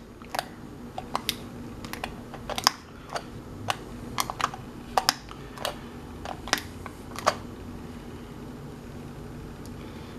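Push-button switch of a battery-powered LED emergency wall light being pressed again and again, giving a string of sharp plastic clicks at irregular spacing that stop about seven seconds in. The switch is stiff and only works when pressed with both fingers, and the light toggles on and off.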